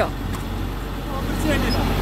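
Caterpillar motor grader's diesel engine idling with a steady low hum, heard up close to the machine.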